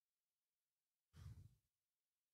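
A man's single short exhale, a sigh, into a handheld microphone, about a second in; the rest is near silence.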